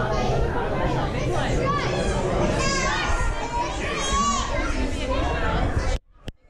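Crowd babble of children's voices, chattering and calling out over each other, with high-pitched excited calls in the middle.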